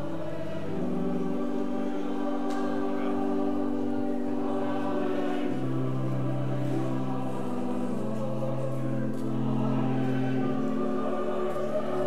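Choir singing a hymn in slow, long-held chords that change every few seconds.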